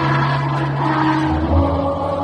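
A song with a choir played loud in a large hall, holding long steady notes, with a low note coming in about halfway through.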